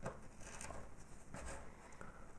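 Faint crunching and scraping of a knife cutting through a crumbly jam-filled shortbread cookie, with a few soft clicks as the blade and pieces meet the table.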